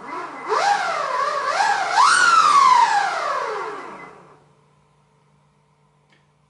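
Electric skateboard's brushless motor, driven by a VESC, whining as it is spun up under throttle. The pitch climbs in three quick surges, peaks about two seconds in, then falls steadily as the motor coasts down and fades out about four seconds in.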